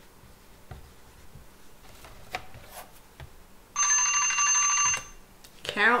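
Timer alarm ringing about four seconds in, a loud electronic trill lasting about a second and a quarter, marking the end of a one-minute timed writing round. Before it, faint scratches and taps of writing on a whiteboard.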